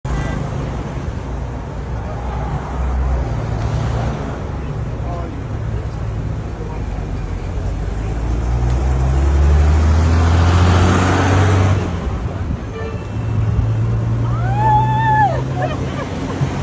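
Road traffic: vehicles running with a steady low rumble, one passing close and loud about ten seconds in. Near the end comes a short high-pitched cry that rises and falls.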